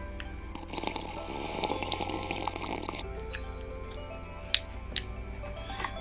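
Background music playing, with a sip of a hot drink slurped from a paper cup from about half a second in, lasting two or three seconds, followed by a couple of small clicks.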